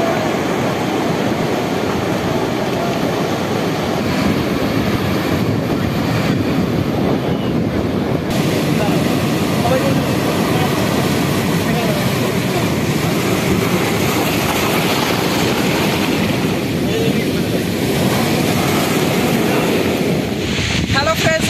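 Sea surf breaking and washing in over rocks and sand: a loud, steady rush of waves.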